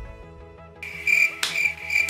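Cricket-chirp sound effect, the stock 'awkward silence' gag, cutting in suddenly about a second in: even, high chirps about three a second over faint held background music.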